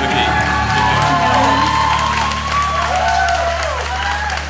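Closing bars of a live Vietnamese ballad duet: the backing band holds low notes, with voices gliding up and down over them as the audience starts to cheer.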